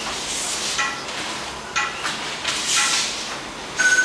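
Heavy cotton jiu-jitsu gis rustling and bodies shifting and sliding on a floor mat as one grappler moves into the mount on the other. A couple of brief squeaks come about one and two seconds in.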